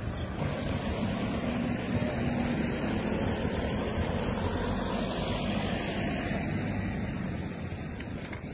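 Steady vehicle engine hum with road and wind noise, heard from a moving car, with a slow falling whoosh about five seconds in.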